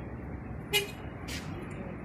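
Steady outdoor street noise, a low rumble of traffic, with two brief sharp sounds a little over half a second apart near the middle, the first the louder.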